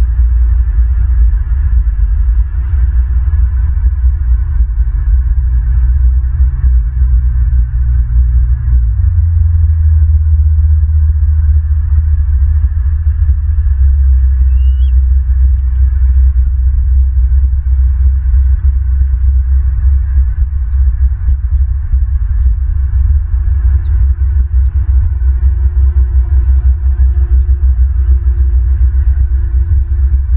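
Loud, steady low rumble on the nest camera's outdoor microphone, dropping slightly in pitch about nine seconds in. From about halfway, faint short high chirps of small birds sound in the background.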